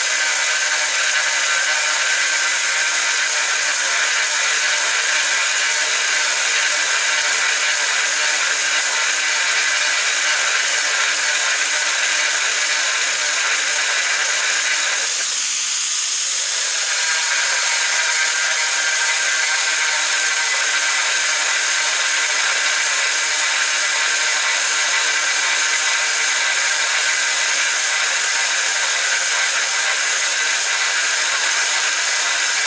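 Corded angle grinder running steadily with an 8 mm dry-drilling bit grinding into hard ceramic tile: a high motor whine over a continuous grinding hiss. Its tone shifts briefly about halfway through.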